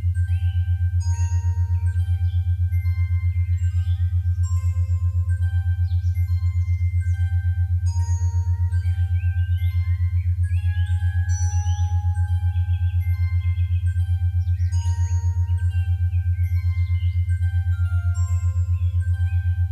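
Background music: a loud, steady, rapidly pulsing low bass drone under a slow melody of separate chime-like bell notes, with occasional gliding higher tones.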